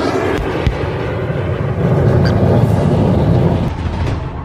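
Loud rumbling sound effect, a dense low roar that swells about halfway through, with two sharp hits in the first second.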